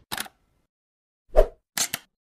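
Short pop and click sound effects of a logo intro animation: a brief click at the start, a louder pop about a second and a half in, then two quick clicks near the end.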